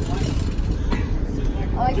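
Steady low rumble of a sport-fishing boat's engines running while a marlin is fought from the game chair; a man's voice starts near the end.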